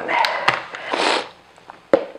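Paper flour bag rustling as it is picked up and handled, with two sharp clicks.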